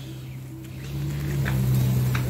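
Bees buzzing: a low, steady hum that swells over the second half.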